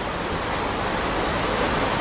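Steady rushing noise of running water, rising a little in level over the two seconds.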